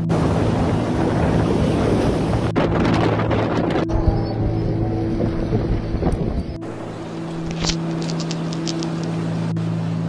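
Blizzard wind blasting the microphone, a loud rushing gust that eases about two-thirds of the way in, leaving softer wind with a few brief crackles. A steady low drone runs underneath.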